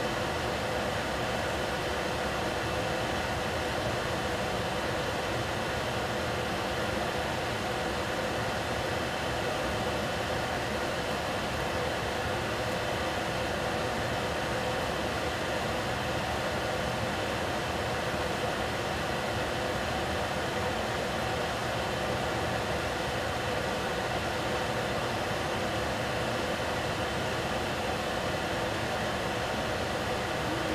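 Steady, even hiss from a stovetop where a lidded stainless steel pot of vegetables is cooking.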